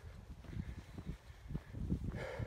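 Hiker's footsteps on a gravelly dirt trail, a steady walking rhythm of about two to three steps a second, over faint wind.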